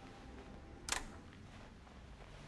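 A single short, sharp click about a second in, over quiet room tone.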